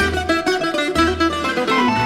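Old Greek laiko record playing: a quick plucked-string melody, bouzouki-like, over guitar and a bass line keeping a steady beat.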